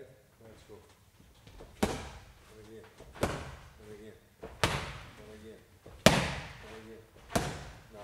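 Five heavy, sharp impacts evenly spaced about a second and a half apart, each ringing off briefly.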